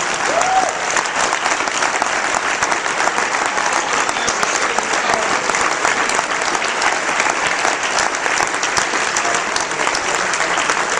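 Audience applauding steadily, a dense patter of many hands clapping with no break.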